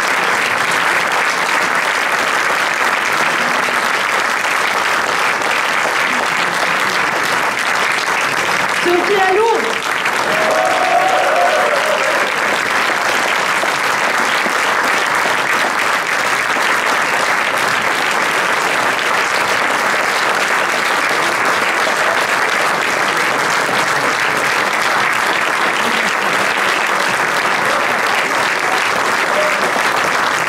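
Audience applauding steadily and thickly, with a voice calling out briefly above the clapping about nine to eleven seconds in.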